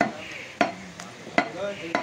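Meat cleaver chopping beef on a round wooden chopping block: four sharp chops, each about half a second apart.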